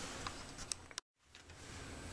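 Faint room tone with a few light clicks, broken about a second in by a moment of dead silence where the recording cuts.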